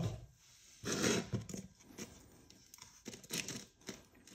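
Crisp crust of a freshly baked sourdough loaf crackling and the crumb tearing as the loaf halves are handled and pulled apart, in two main bursts, about a second in and again past three seconds, with softer rustles between.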